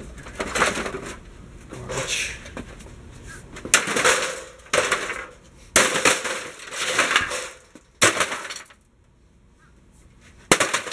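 Sledgehammer blows into the sheet-metal case of an Apple G3 computer tower: about four sharp strikes in the second half, each followed by rattling, clattering metal and parts. Before them come rougher clatters of the parts inside being handled.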